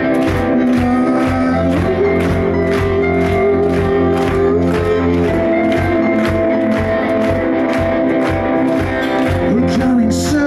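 Live rock band playing amplified through a club PA, heard from the audience: drums keep a steady beat of about two to three hits a second under electric guitars and held chords.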